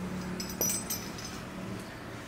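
Brief light metallic clinking and ringing about half a second in as a hot motorcycle exhaust baffle insert is handled by the tiled floor, over a faint steady low hum.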